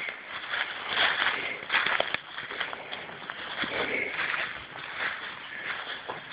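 Footsteps through dry leaf litter on a forest floor: uneven rustling steps.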